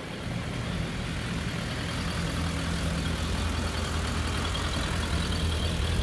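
A Suzuki Bandit 1250F's inline-four engine idling steadily through its stock muffler, growing a little louder toward the end as the exhaust comes close.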